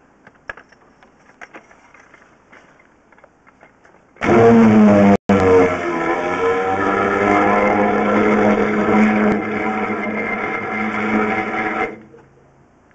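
A high-pressure drain jetter's engine running steadily while water is blasted down the drain. It cuts in suddenly about four seconds in, drops out for a split second soon after, and stops abruptly just before the end.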